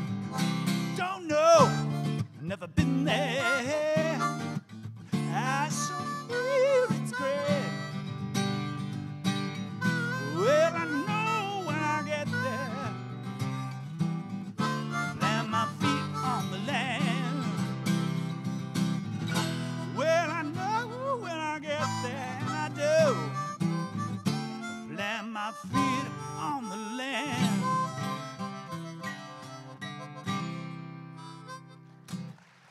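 Acoustic guitar strumming under a harmonica solo, the harmonica's notes sliding and wavering in pitch. The music tapers off near the end as the song closes.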